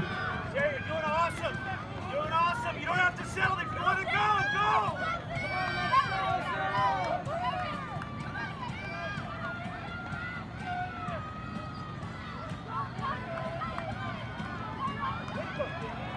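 Spectators shouting encouragement to runners passing on the track, several voices overlapping. The shouting is busiest in the first half and thins out after about eight seconds.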